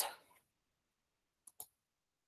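Two quick, faint computer mouse clicks, one right after the other, about one and a half seconds in.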